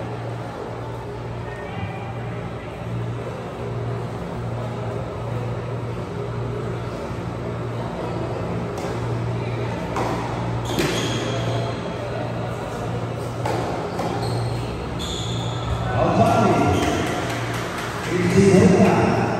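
Tennis ball struck by rackets and bouncing on a hard indoor court during a rally, with a few sharp hits in the second half, echoing in a large hall over a steady low hum.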